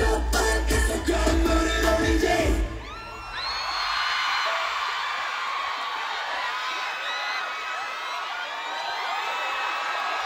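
Loud live pop music with heavy bass over a stadium sound system cuts off suddenly about two and a half seconds in, and a large crowd of fans then cheers and screams with many high-pitched voices.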